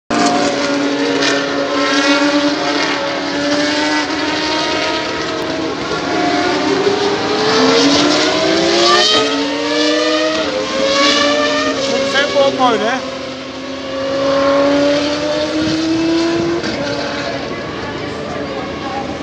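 Single-seater racing car engine running at high revs as it passes, its pitch climbing and then dropping back several times as it shifts up through the gears. The note is loud and sustained throughout.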